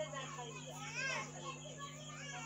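Children's high-pitched voices chattering and calling out, with no clear words, over a steady low hum.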